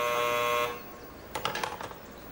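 Apartment door intercom buzzer sounding: a steady electric buzz that cuts off sharply about three quarters of a second in, followed by a few faint clicks.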